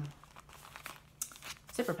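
Plastic-wrapped craft kit packaging crinkling as it is handled, in irregular short crackles.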